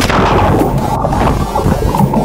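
A person plunging into lake water from a height: a sudden loud splash, then a continuous churning rush of water and bubbles heard from underwater.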